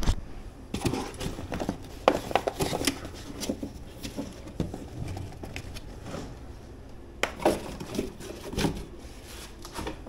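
Handling noise inside a cardboard shipping box: cardboard and foam packing rustling and scraping, with scattered small knocks and clicks.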